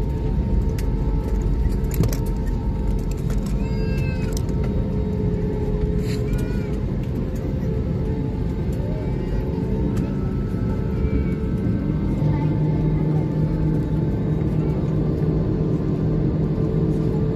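Jet airliner cabin noise while taxiing after landing: a steady engine hum and rumble with several held tones. A few brief high, gliding calls come about four and six seconds in.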